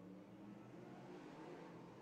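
Faint engines of outlaw figure-eight race cars running around the track, a steady low drone that swells slightly midway.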